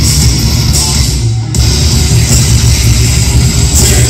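A punk rock band playing live at full volume, with distorted electric guitar, bass and drums, heavy in the low end as heard from the crowd. About a second in, the sound briefly thins out before the full band carries on.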